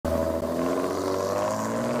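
Ford Mustang's engine running as the car pulls away, a steady engine note that sinks slightly in pitch.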